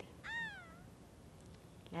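A single short meow, rising then falling in pitch.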